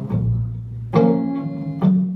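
Live music between sung lines: a held low note, then a strummed hollow-body electric guitar chord about a second in, with another accent just before the end.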